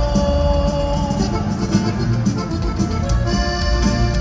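Norteño band playing live, an instrumental stretch with accordion and guitars over bass and a steady drum beat.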